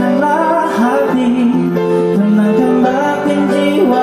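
Live electronic keyboard music: held chords under a melody that moves from note to note.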